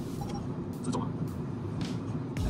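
Steady road and engine noise inside a moving car's cabin at highway speed, with a couple of brief ticks about a second in and near the end.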